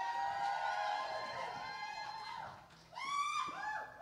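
Women in a congregation whooping and cheering: several high voices hold a long "woo" together for about two seconds, then a shorter rising whoop comes about three seconds in.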